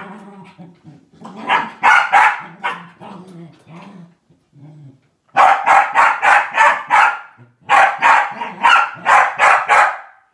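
Corgi growling and yapping at a moving elliptical trainer, then breaking into two runs of rapid, loud, sharp barks, about four a second, in the second half.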